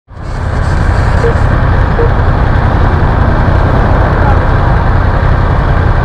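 Yamaha YZF-R1M inline-four sport-bike engine idling with a loud, steady low rumble.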